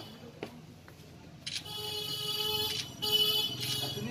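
A steady, high-pitched electronic-sounding tone starts about a second and a half in, after a quiet opening with a faint click, and breaks off briefly a few times.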